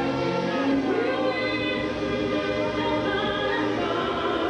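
Gospel-style song with a choir singing long held notes over the accompaniment.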